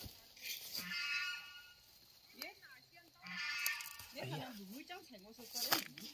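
Faint, indistinct talking voices, with a few brief crackles in between.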